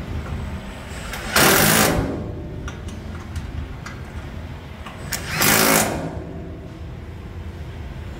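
Cordless power driver running in two short bursts, each about half a second, about a second and a half in and again about five and a half seconds in, tightening the bolts that fasten a beam to its bracket.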